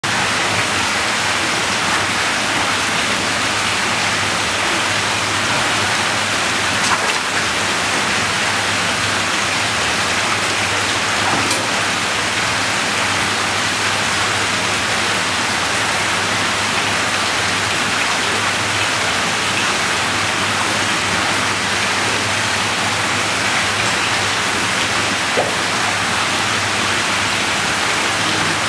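Steady rush of running, splashing water, with a couple of faint clicks.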